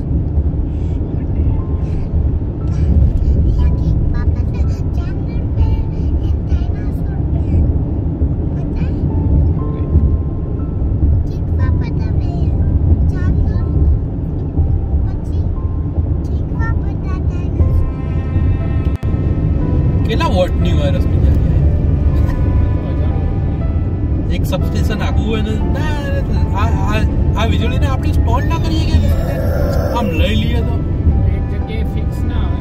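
Steady road and engine rumble of a car on a highway, heard from inside the car through the windshield, under background music. A voice, talking or singing, comes in over it about twenty seconds in.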